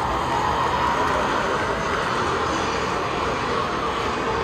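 Steady outdoor crowd din with a continuous mechanical roar beneath it, even in level throughout.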